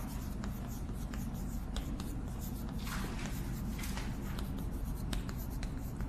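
Chalk writing on a chalkboard: a run of short scratching strokes and sharp taps of the chalk as Chinese characters are written out stroke by stroke.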